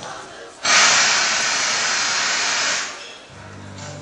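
A sudden burst of loud white-noise static in the lip-sync soundtrack. It starts under a second in, holds steady for about two seconds, then fades, and a low steady hum of the next track comes in near the end.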